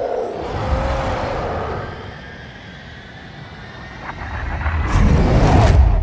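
Cinematic sound effects from a film soundtrack: deep rumbling that eases off after about two seconds, then builds to a loud rush in the last second or so.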